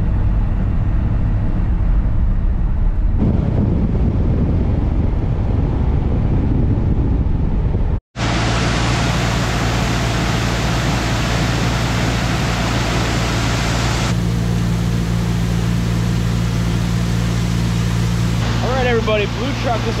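Tandem grain truck's engine running steadily while driving, a low rumble. About eight seconds in it cuts out abruptly and is replaced by a steady machine hum with a hiss over it.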